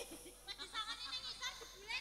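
Faint, scattered chatter of voices in the background, in a lull between louder amplified speech.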